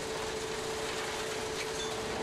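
Plasser & Theurer USP 2005 ballast distributing and profiling machine working along the track, ploughing and sweeping ballast: a steady, even machine noise with a faint steady hum.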